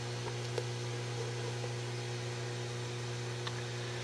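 Steady electrical mains hum, a low buzzing tone with several higher overtones, with a couple of faint clicks.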